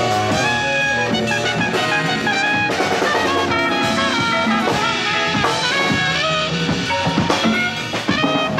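Live jazz ensemble playing an instrumental passage: trumpet and saxophone lines over conga drums and a drum kit.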